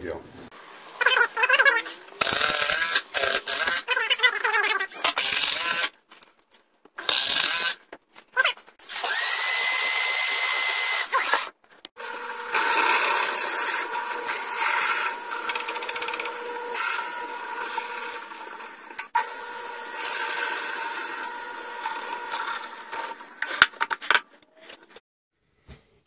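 Power-tool work in bursts, broken by cuts in the first half. From about twelve seconds in, a drill press bores into a wooden cylinder, running steadily for about twelve seconds before it stops.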